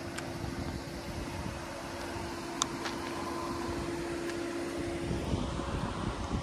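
A steady mechanical hum over outdoor background noise, holding one pitch and cutting off about five seconds in, with a single sharp click near the middle.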